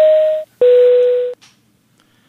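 Two-tone airliner cabin chime, a higher tone followed by a lower one with a faint hiss behind them: the signal that the fasten-seatbelt sign has been switched on.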